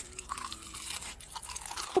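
Close-miked ASMR eating: a mouth chewing, with soft, irregular crunching and crackling.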